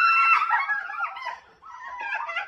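High-pitched screams of excited surprise from a woman and girls: one long held shriek at the start, then broken squeals that fade out about a second and a half in, with more starting again near the end.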